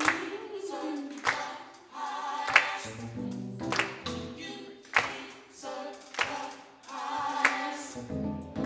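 Gospel vocal group singing in harmony, with sharp hand claps on the beat about every 1.2 seconds.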